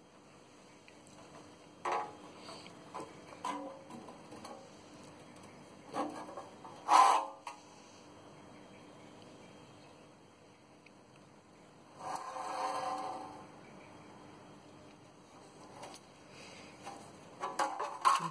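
A few scattered clicks and knocks in a quiet room, the loudest about seven seconds in, with a short rustle about twelve seconds in.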